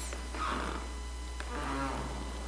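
Steady low electrical mains hum in the recording, heard in a pause between words, with a faint breath about half a second in and a brief faint murmur of a man's voice near the end.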